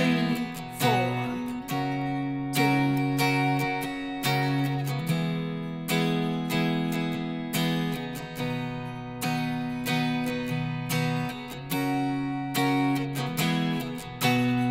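Clean, unamplified-sounding Telecaster-style electric guitar with a capo, strumming chords in D, C and G shapes in a steady country rhythm. There are sharp strummed attacks and a chord change about every second, with quick C-to-G hits.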